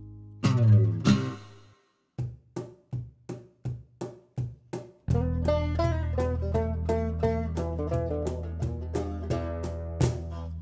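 Country band music: a held chord dies away, two loud strummed chords follow, then a picked single-note intro of about three notes a second. About five seconds in, the full band comes in with a steady bass and rapid banjo picking.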